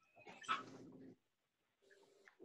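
A single short, faint whine-like vocal sound about half a second in, fading out within a second, heard over a video-call audio feed.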